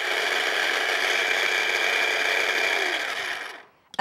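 Electric mini food chopper running steadily, its blade chopping crustless white bread into fine breadcrumbs. The motor sags slightly, then stops abruptly about three and a half seconds in.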